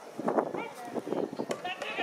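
Voices at a ballpark, with a high, drawn-out voice call that wavers in pitch starting about halfway through.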